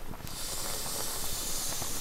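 A pot of hot pot boiling over a wood fire gives a steady high hiss of steam, starting abruptly about a quarter second in, with faint crackles from the fire beneath.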